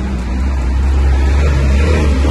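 Low, steady rumble of a motor vehicle's engine close by, growing slightly louder, over a hiss of wet-road and rain noise.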